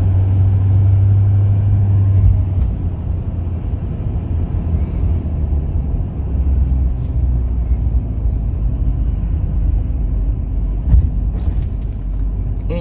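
Road and engine rumble heard from inside a moving vehicle's cabin in slow traffic. A steady low hum in the first couple of seconds settles into a lower rumble, with one short knock about eleven seconds in.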